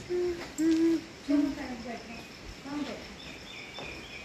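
A series of short hooting calls, four in about three seconds, each held at one pitch. The third call slides down at its end. Faint, high bird chirps follow near the end.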